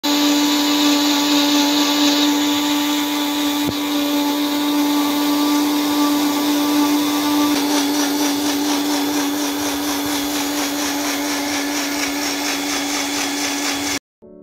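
Kajafa 400-watt bullet-style juicer mixer's motor running steadily at full speed, first grinding a jar of white contents, then, after a change about halfway through, blending fruit into juice. There is a single click about four seconds in.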